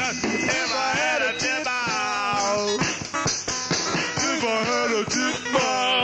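A rock-and-roll style song playing: a singing voice over guitar and a steady drum beat.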